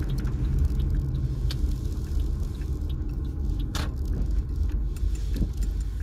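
A car's engine and tyre noise heard from inside the cabin while driving: a steady low rumble with a few light clicks or rattles, the sharpest about four seconds in.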